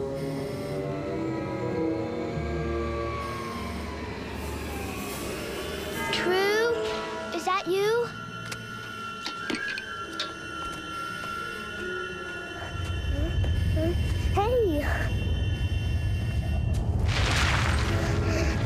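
Tense TV-drama background score with no dialogue. Short gliding chirp-like calls come through in the middle, and a steady low rumble joins about two-thirds of the way through.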